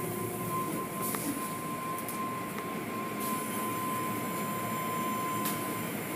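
Automatic car wash working over the car, heard from inside the cabin: a steady wash of spray and brushing noise with a thin steady whine, and a few light knocks as the brushes and cloth strips hit the body and glass.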